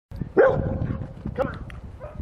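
A dog barking twice, about a second apart; the first bark is the louder.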